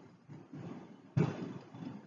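A pause in a man's speech: faint room sound, with one short soft sound starting about a second in and fading.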